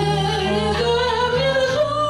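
A woman singing a retro 1960s-style song into a microphone over instrumental accompaniment. She holds one long, slightly rising note with vibrato.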